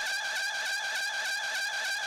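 Breakdown in an electronic EBM/synth-pop club track: the kick drum and bass drop out, leaving a steady high synth tone with a quick pulsing synth layer above it.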